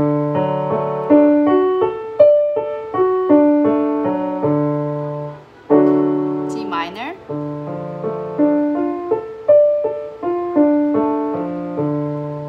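Digital piano playing cross-hand arpeggios: one broken chord after another, hands crossing over, in two runs of several seconds each, with a short break about halfway through.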